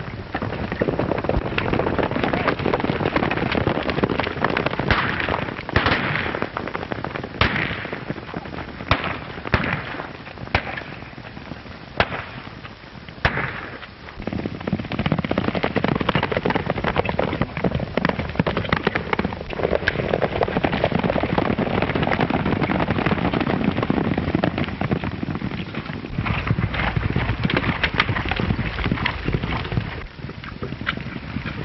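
A string of sharp gunshots, about seven between about five and thirteen seconds in, over a steady rushing noise of horses galloping on open ground.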